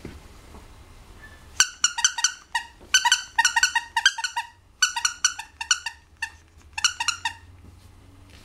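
Squeaker in a small plush dog toy squeezed by hand again and again: short, high, squeaks of steady pitch in four quick bursts of several squeaks each.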